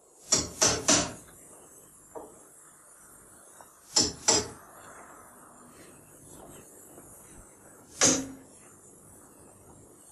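Hammer driving nails into a wooden coffin: three quick strikes, then two more about four seconds in and a single strike near the end.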